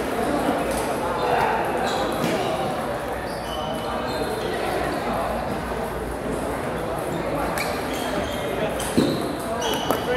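Table tennis balls clicking off tables and paddles at scattered moments, with a louder knock near the end, over background voices in a large echoing hall.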